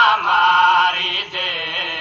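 A man chanting a Saraiki nauha, a mourning lament for Imam Hussain, in long held notes with a wavering pitch and a short breath about a second in. It is an old radio recording with the top end cut off.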